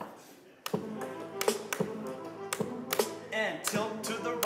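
Electronic music from a neural-network synthesizer: sharp percussive hits every half second or so over sustained synthesized tones, with a few gliding pitches, starting after a brief hush about two-thirds of a second in.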